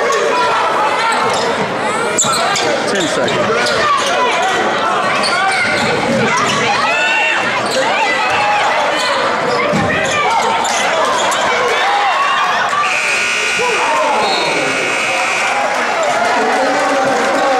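Basketball game in a gymnasium: the ball bouncing on the hardwood amid a crowd of shouting voices. About thirteen seconds in, the scoreboard horn sounds one steady note for about three seconds as the clock runs out on the second quarter.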